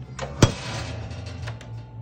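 Toaster oven door shut with a single sharp clack about half a second in, with a brief ring after it; a steady low hum runs underneath.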